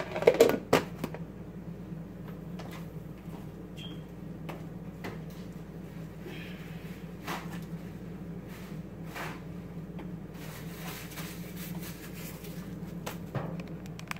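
Kitchen handling sounds: a cluster of clicks and knocks in the first second as a blue plastic lid goes onto a white plastic bowl, then scattered light knocks and clicks over a steady low hum.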